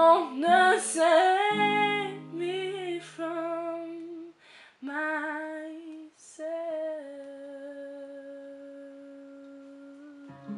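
A woman singing the closing phrases of a ballad over acoustic guitar, ending on one long held note about seven seconds in.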